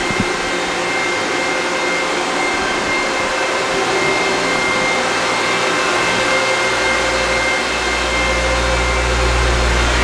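Cooling fans of ASIC crypto miners running: a steady loud rush with a thin high whine. A low rumble joins about six and a half seconds in.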